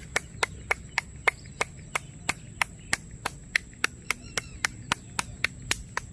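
One person clapping hands with the palms spread wide for a loud clap. It is a steady run of single sharp claps, about three a second, that stops near the end: clapping to call egrets.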